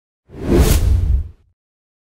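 A whoosh sound effect with a deep rumble underneath, swelling up just after the start and dying away by about a second and a half in.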